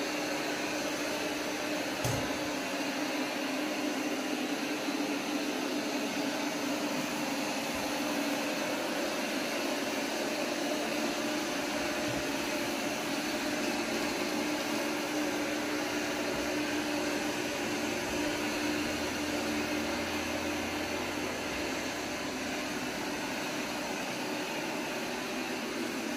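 Eufy RoboVac X8 robot vacuum running, a steady whir with a low hum from its twin suction motors as it sweeps up scattered cereal on a hardwood floor. One light knock about two seconds in.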